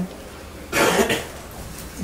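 A man coughs once, briefly, about three quarters of a second in: a short rough burst of breath with no voice in it.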